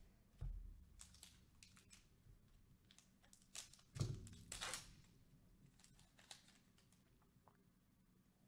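A trading-card pack being opened by hand: a soft thud on the table, light wrapper rustling, then a heavier thump about four seconds in followed by a short tearing rip of the pack wrapper. Faint card-handling clicks follow.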